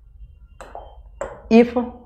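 A man's voice speaking, the loudest part a short word near the end, over a low steady hum.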